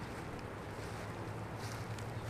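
Steady low outdoor background hum with some wind on the microphone, and a faint brief rustle near the end.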